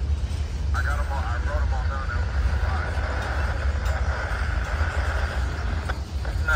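Freight train boxcars rolling past, a steady low rumble from the wheels on the rails, with a wavering higher-pitched sound above it from about a second in.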